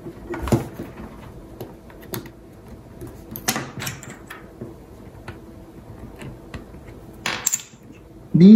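Light clicks, taps and short scrapes of plastic prying tools working at an opened iPod's metal case and being set down on a wooden table. A sharper tap comes about half a second in, with brief scraping clusters around the middle and near the end.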